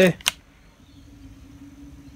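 A faint, steady low hum on one pitch after a single spoken word at the start.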